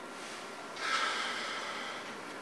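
A person's breath: a short, sharp outward huff or snort through the nose about a second in, fading over the following second.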